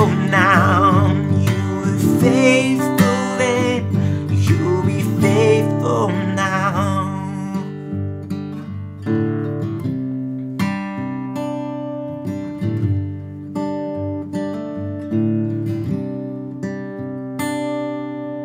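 Taylor 214ce acoustic guitar played under a man's singing voice, which holds wavering notes for the first seven seconds or so. The guitar then carries on alone with fingerpicked notes and chords left to ring out and slowly fade: the song's closing bars.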